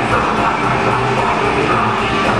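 Heavy metal band playing live: distorted electric guitars over a drum kit, a loud, steady, dense wall of sound.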